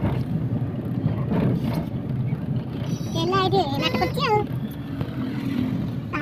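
Steady low rumble of a car's engine and tyres heard from inside the moving car, with a voice speaking briefly about halfway through.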